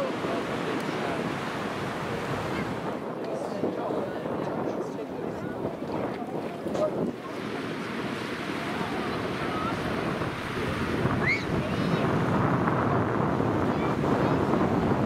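Small waves breaking on a sandy beach under a steady wind buffeting the microphone, getting a little louder near the end, with a few faint distant shouts.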